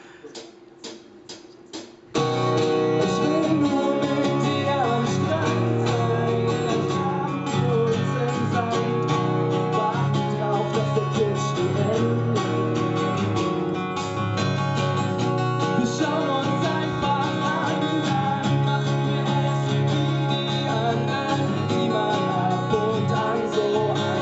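Two acoustic guitars strumming a song's instrumental intro with cajon and cymbal accompaniment, starting abruptly about two seconds in after a few soft clicks.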